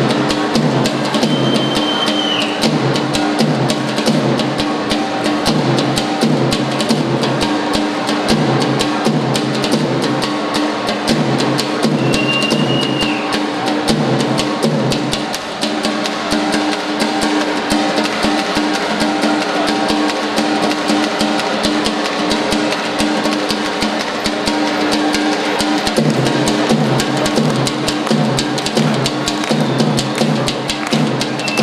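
Albanian folk dance music with fast, driving drumming under a sustained melodic line. The melody breaks off briefly about halfway through and shifts again near the end.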